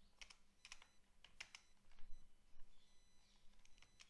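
Faint, irregular clicks of computer keyboard keys being pressed, about ten taps spread unevenly.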